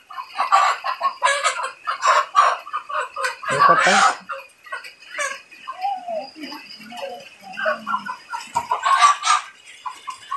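A chicken calling in repeated loud, harsh bursts while a person holds it in their hands. The loudest calls come about four seconds in and again near the end.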